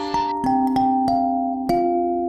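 Background music: a kalimba playing a slow melody of single, ringing plucked notes, about five in two seconds, each left to ring on.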